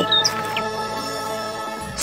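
Background music of sustained tones that slowly fades, with a few short, high bird chirps near the start.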